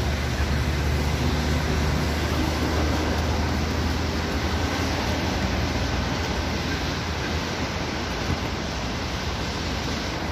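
Steady rushing outdoor noise, with a low hum in the first few seconds that fades out.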